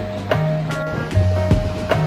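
Background music: a chill track with a steady beat, held bass notes and a light melody.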